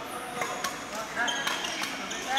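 Badminton rackets striking shuttlecocks in a fast feeding drill: several sharp hits in quick succession, with court shoes squeaking on the hall floor.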